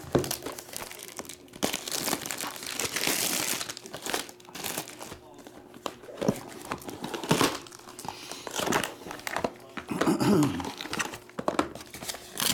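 Plastic shrink-wrap crinkling and tearing as a sealed trading-card hobby box is unwrapped and opened by hand, in irregular bursts of rustling.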